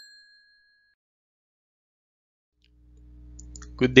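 A bell-like notification ding sound effect rings out and fades away within about a second. Near the end a low hum comes up and a voice begins speaking.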